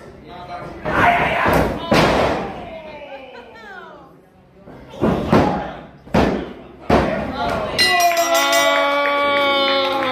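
Two heavy thuds on the wrestling ring mat with shouting voices, then three evenly spaced slaps of the referee's hand on the mat: the three-count of a pinfall. Victory music starts near the end.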